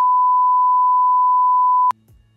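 A steady 1 kHz test tone, the reference beep that goes with colour bars, cutting off suddenly near the end.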